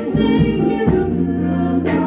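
Live band performance: a woman singing lead with backing singers harmonising, over a steady bass line, with a sharp drum hit near the end.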